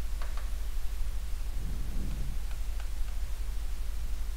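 Steady hiss and low mains hum, with a few faint light taps of a stylus on an interactive whiteboard screen while a dashed line is drawn.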